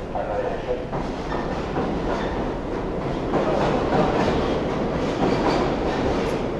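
Subway train noise in the station, a dense rumble and clatter that grows louder about halfway through, with crowd voices beneath it.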